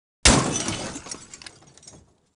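Glass shattering sound effect: one sudden loud crash about a quarter second in, followed by scattered smaller clinks that fade over the next second and a half.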